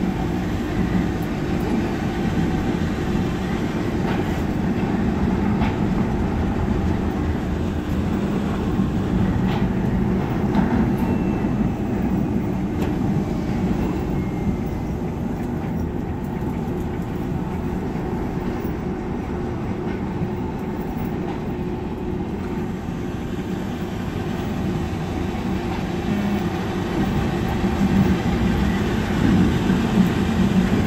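Düsseldorf Airport SkyTrain (H-Bahn suspended monorail) car running along its overhead guideway, heard from inside the car: a steady low rumble of the running gear and drive, growing slightly louder near the end.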